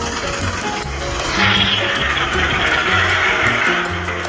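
Background music with a steady rhythmic bass line, overlaid by a loud rushing noise that swells about a second and a half in.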